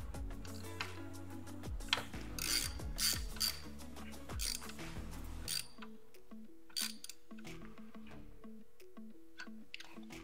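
Hand ratchet clicking in short bursts, mostly in the first half, as a 7/16-inch socket tightens an air valve into an oil filter adapter. Background music with a repeating beat plays throughout.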